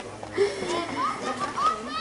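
Boys' voices calling out across a football pitch during play: several short shouts that rise in pitch.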